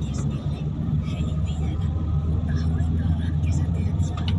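Steady low rumble of a car's engine and tyres, heard from inside the cabin while driving on a snow-covered road.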